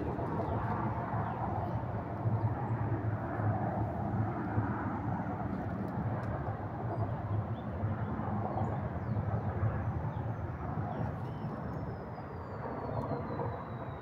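Steady rushing wind noise on the microphone outdoors, rising and falling in gusts, with a faint high thin whistle falling in pitch near the end.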